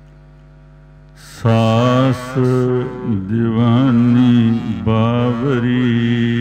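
A man chanting Sikh Gurbani in a melodic, sustained style over a steady drone. The drone sounds alone for about the first second and a half before the voice comes in loudly.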